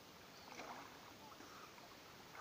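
Faint splashing and lapping of water from a swimmer moving through calm water and rising to stand, with a slightly louder splash about half a second in.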